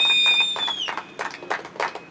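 A small group clapping in scattered, uneven claps. In the first second a high, steady whistle sounds over them, with a second, lower whistle beside it for about half a second. The whistle cuts off about a second in and the clapping carries on.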